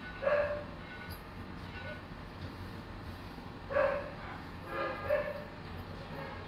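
A dog barking: four short, separate barks, one about a third of a second in, one near four seconds, and two close together around five seconds.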